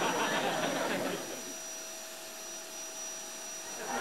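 Vacuum cleaner running. About a second in it drops quieter, leaving a steady hum with a single pitch, and it gets louder again near the end.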